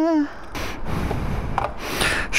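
Rustling and rubbing of textile motorcycle gloves being handled and pulled off close to the microphone, with a few small clicks.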